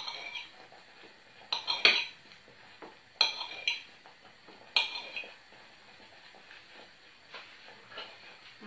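Table knife clinking against a ceramic plate while slicing mozzarella: about seven sharp clinks with brief high ringing, spaced unevenly.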